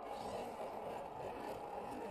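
Electric motor and gearbox of a 1/10-scale RC crawler whirring steadily as it drives slowly over loose dirt clods.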